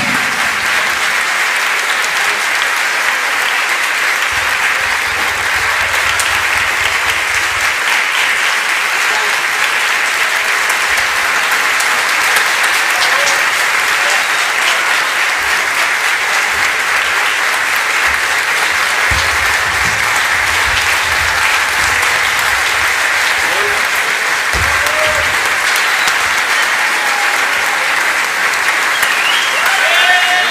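Audience applause, a dense steady clapping that holds at one level without letting up.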